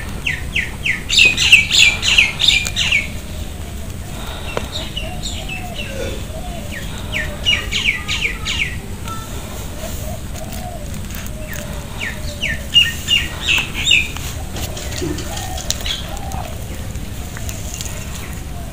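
A bird chirping in bursts of quick, repeated high notes, loudest about a second in, around eight seconds in and around thirteen seconds in, over a steady low background rumble.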